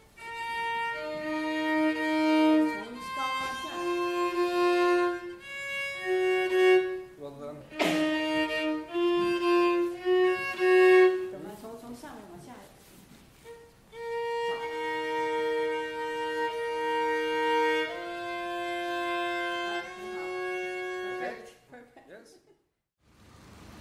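A viola bowed in double stops: held two-note chords, mostly fifths across adjacent strings, played as a demonstration of tuning a fifth in tune. The chords come in several phrases, with a short break about halfway through.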